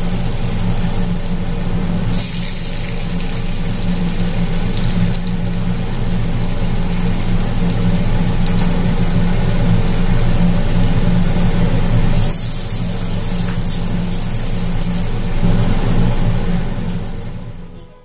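Vegetable Manchurian balls deep-frying in oil in a steel kadai: a steady bubbling sizzle that fades out near the end.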